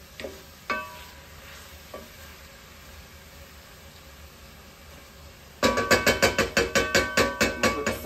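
Onions, bell pepper and garlic sizzling softly in a pot while a wooden spoon stirs and scrapes them, with a few light clicks. About five and a half seconds in, a sudden run of loud, ringing knocks starts, about four a second, and keeps going.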